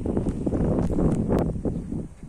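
Wind buffeting the microphone as a low, rumbling noise, with a few sharp rustles or clicks through it. The rumble stops abruptly at the end.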